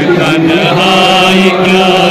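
Male voices chanting a Kashmiri noha, a Shia mourning lament, in long held notes.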